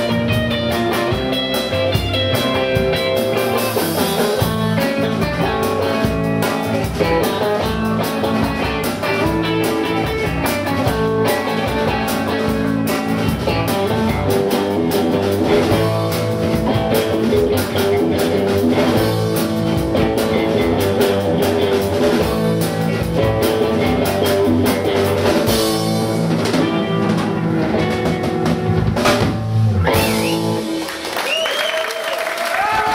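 A live rock band playing: two electric guitars, a bass guitar and a drum kit, loud and steady.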